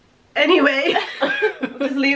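Women's voices talking and chuckling, starting about a third of a second in after a brief pause.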